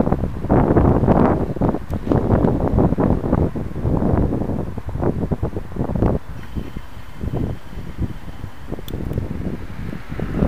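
Wind buffeting the microphone of a bicycle-mounted camera while riding, gusting louder through the first six seconds and easing after, over the sound of road traffic.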